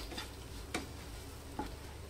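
Flat spatula stirring and scraping spice powders through fried ingredients in a nonstick frying pan, with a faint sizzle and two soft taps.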